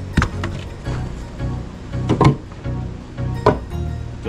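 Background music with a steady beat, over a few sharp wooden knocks (the loudest about halfway through) as split red oak firewood pieces are handled and knocked together in a tire.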